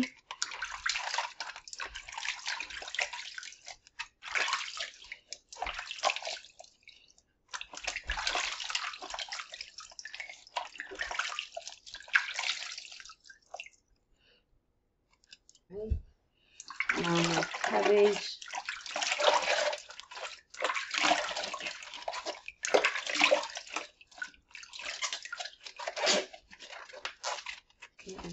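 Hands scrubbing fruit and vegetables in a plastic basin of water: irregular splashing and sloshing, with a pause of a few seconds about halfway through.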